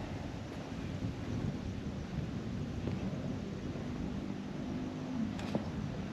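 A steady low rumbling noise, with a single sharp click near the end.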